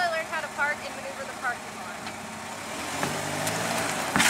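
Chevrolet Cobalt's four-cylinder engine running as the car pulls away, its low hum coming up about three seconds in. Earlier, a quick run of short high chirps.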